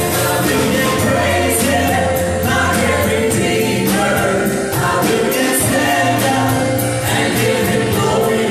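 Live gospel worship song: several women's voices singing together into microphones, backed by a band with keyboard and a drum kit keeping a steady beat.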